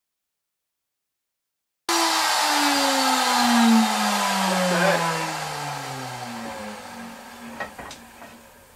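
Router with a 3/8-inch flush trim bit, mounted in a router table, winding down after being switched off: a falling whine that starts suddenly about two seconds in and fades over about five seconds, with a light knock or two near the end.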